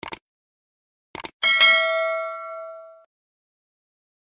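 Subscribe-button animation sound effects: quick mouse-click sounds at the start and again about a second in, then a notification bell ding that rings out and fades over about a second and a half.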